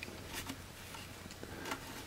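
A Pickett leather slide rule holster being handled, giving a few faint soft taps and rustles over a low room hum.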